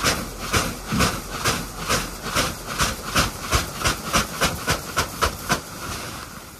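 Wheat grain being scooped by hand into a woven plastic sack, a rushing, rattling pour of grain with each scoop in a steady rhythm of about three to four scoops a second, stopping shortly before the end.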